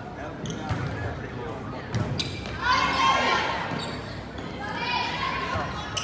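A volleyball being served and played: a few sharp smacks of hands on the ball, echoing in a gymnasium, with voices calling out twice in between.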